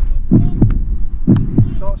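A deep heartbeat-like double thump, 'lub-dub', repeating about once a second as a steady tension beat, with a few words of a man's voice near the end.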